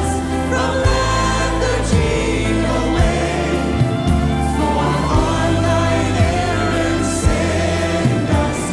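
A worship band playing a modern hymn: stage piano and electric bass carry steady chords under singers' voices.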